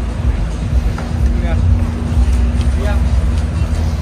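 Gondola lift terminal machinery running: a steady low rumble with a constant hum as the cabins move through the station.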